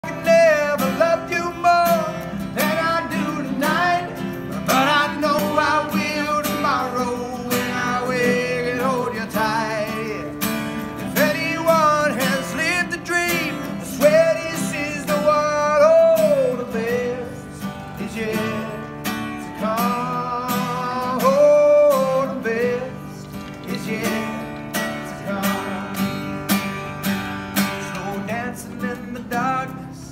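Live country song: a voice singing a melody over strummed acoustic guitar.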